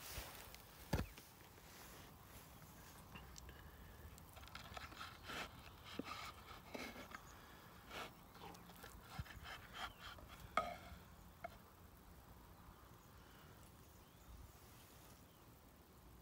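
Faint crackling and scraping of a knife cutting through crisp pizza crust on a wooden chopping board, in short scattered strokes, with a single knock about a second in.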